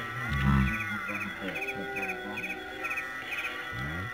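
Quick groups of three or four short high chirps, repeating about two and a half times a second, typical of a chirping insect, over background music. A low thump about half a second in is the loudest sound.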